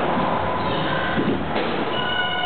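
Steady din of a busy indoor skatepark in a large hall: skateboard and scooter wheels rolling over wooden ramps and concrete, with a few steady high tones over it.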